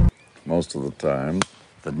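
Two short snatches of a man's voice in a dull, narrow-band recording, with a sharp click about one and a half seconds in. A heavy low hit is just dying away at the very start.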